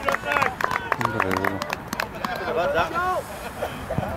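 Several voices shouting and calling out across an open-air football pitch, loudest in the first three seconds, over a low rumbling background.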